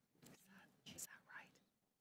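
Faint whispered speech, a few quiet words with a hissing 's' about a second in, over near silence.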